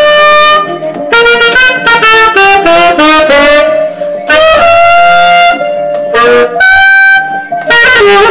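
Saxophone played live in jazz phrases: a held note, a run of quick notes, then longer held notes, the last one high, with short breaks between phrases.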